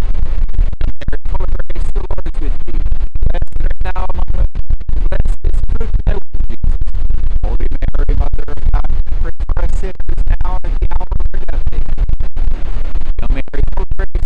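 Wind buffeting the microphone: a loud, crackling rumble that keeps cutting out, with a man's speech half buried under it.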